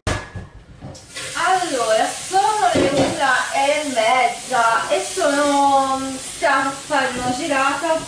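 A woman's voice talking, starting about a second in after a brief lull, over a light background hiss.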